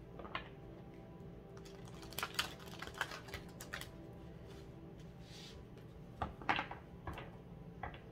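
A deck of oracle cards being shuffled by hand, with a run of quick papery clicks about two seconds in and again about six seconds in. Soft steady background music plays underneath.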